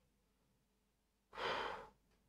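A man's breathy exhale, a sigh about half a second long, starting about a second and a half in after a quiet stretch.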